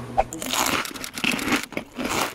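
Irregular rustling and crinkling noise, starting about half a second in.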